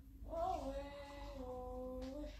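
A single long, drawn-out vocal note that rises briefly and then holds a steady pitch for over a second.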